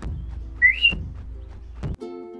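Background music with drum hits about once a second, over which a short whistle rises in pitch and wavers for about half a second, starting about half a second in.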